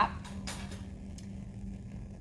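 A few light clicks as a capped glass culture tube is set into a wire test-tube rack, over a steady low hum.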